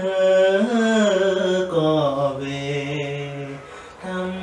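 A man singing a Vietnamese lullaby (hát ru) unaccompanied, holding long, slow notes that glide and step down in pitch, then fading out shortly before the end.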